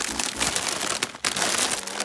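Close crinkling and rustling of something being handled near the microphone, in two stretches, the second starting about a second in.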